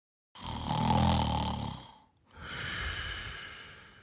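A person snoring, most likely a cartoon sound effect: one snore, made of a low pitched breath in lasting about a second and a half, then a hissing breath out.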